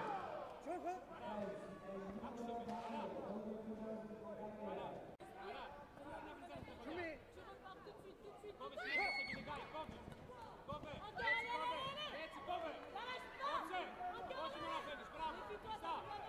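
Indistinct speech from several voices, louder in stretches around the middle and latter part.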